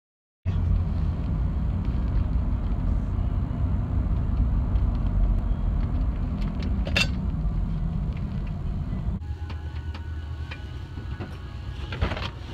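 Steady low rumble of a car driving, heard from inside the cabin, with one sharp click about seven seconds in. About nine seconds in it drops abruptly to a much quieter hum.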